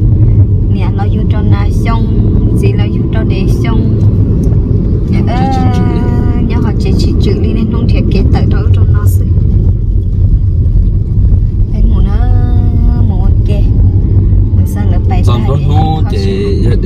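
Steady low road and engine rumble inside a moving car's cabin, with voices talking over it, most clearly about five seconds in and again about twelve seconds in.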